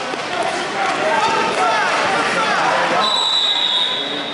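Many overlapping voices of spectators and coaches, echoing in a large hall. A steady high tone starts about three seconds in and holds to the end.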